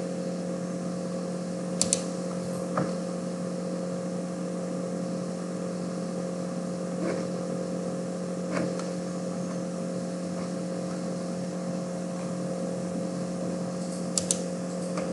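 Steady low electrical hum with a few sharp computer-mouse clicks, two in quick succession about two seconds in and single ones later.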